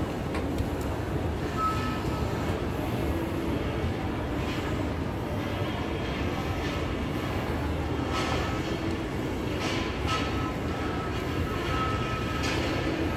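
Escalator running: a steady low mechanical rumble from the moving steps and drive, with a faint high whine that comes and goes.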